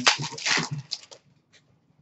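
Trading cards being handled and flicked through in the hands: a sharp click, then a second of crisp card rustles that stop about a second in.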